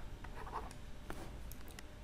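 Faint scratching and a few light ticks of a stylus writing on a tablet screen.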